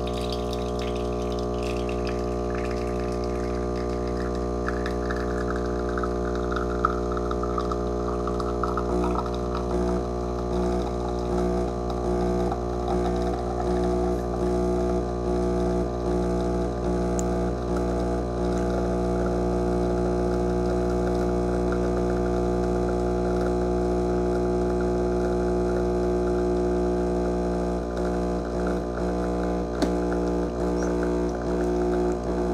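Espresso machine pump humming steadily as it pulls a shot, with espresso streaming into a glass cup. A faint high tone slides down over the first several seconds, and from about nine seconds in the hum pulses regularly.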